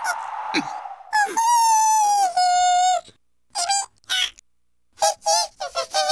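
Cartoon vocal sound effects. A long held cry drops a step in pitch partway through, then stops suddenly. After a pause come several short, wavering, bleat-like calls.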